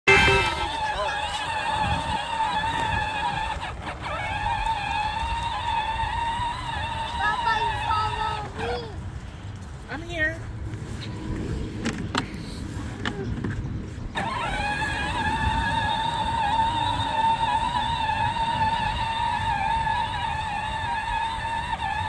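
Electric drive motors of a John Deere battery-powered ride-on toy utility vehicle whining steadily as it drives over grass. The whine stops for several seconds partway through, then starts again and runs on.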